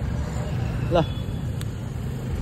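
Street traffic: a steady low motor rumble from motorbikes and other vehicles close by, with one short spoken syllable about a second in.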